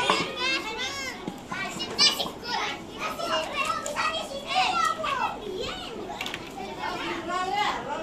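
Young children chattering and calling out over one another while playing, their high voices overlapping throughout.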